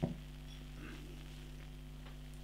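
Quiet room tone with a steady low electrical hum; a brief soft sound right at the start.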